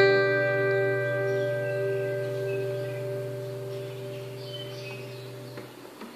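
Acoustic-electric guitar's final chord of the song ringing out with a bell-like tone, slowly dying away to nothing near the end.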